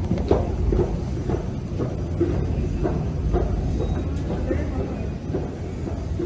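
Steady low rumble of a moving escalator in a subway station, with indistinct voices over it.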